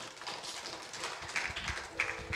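Faint room noise with scattered light taps and low knocks.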